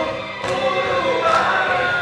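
A choir singing held, slowly gliding notes in several voices at once.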